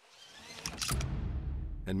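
Car seat belt pulled across and buckled: the webbing slides with a rising rustle, then the buckle clicks shut a little under a second in. A low steady hum carries on after.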